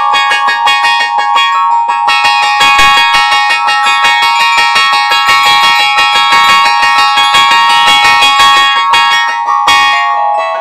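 Keyboard music: a rapid, dense stream of piano-like notes over held high tones, with a short break just before the end.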